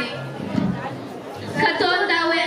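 Voices over music in a large hall, dropping to a lull in the first second or so and coming back strongly about one and a half seconds in.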